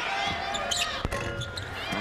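A basketball free throw hitting the rim and missing: a single sharp clank about a second in, over steady arena background noise.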